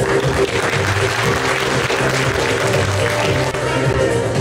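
An audience applauding steadily over background music.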